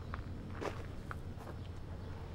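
A few faint footsteps, three soft steps spread over the first second or so, over a steady low hum.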